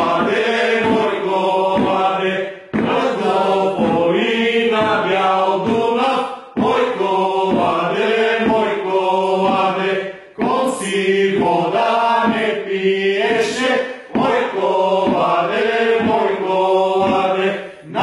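A group of men singing a Bulgarian koleda (Christmas carol) song together, in sung phrases of about four seconds separated by short pauses for breath.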